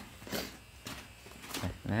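A few short, faint scuffs and rustles, as if from a handheld camera being moved, then a man's voice starts near the end.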